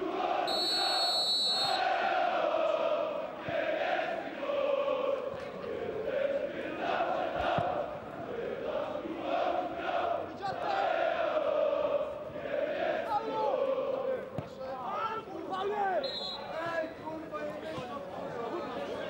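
A referee's whistle blows sharply for about a second just after the start, the kickoff of the second half, over football supporters chanting in unison in the stands. A second, shorter whistle sounds near the end as the referee signals a foul.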